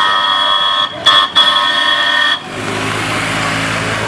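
Vehicle horn sounding in three blasts, with two brief breaks, for about two and a half seconds. It is followed by a low engine hum and street noise.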